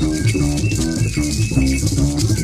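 Modal jazz band recording: a repeating low plucked double-bass figure under shaken hand-percussion rattles, with high held wind notes.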